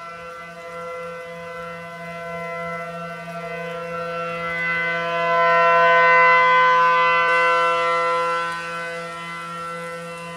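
1962 Federal Signal Model 7T outdoor warning siren sounding a steady tone for a tornado warning. It swells to its loudest about six seconds in, then falls back.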